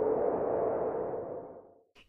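An edited-in sound effect: a single hazy, sonar-like tone that swells and then fades away, dying out just before speech resumes.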